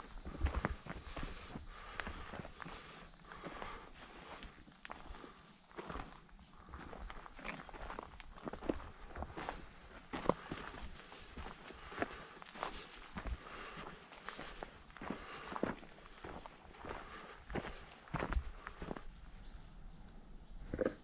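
Footsteps of a hiker walking along a dry dirt trail: a steady run of soft scuffs and crunches, one after another.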